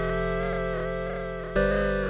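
SoundSpot Union software synth playing a wavetable pluck-pad patch, its oscillator phase swept by an LFO, which gives a slight pitch-bending, analog-style feel. A held sound fades slowly and is struck again about one and a half seconds in.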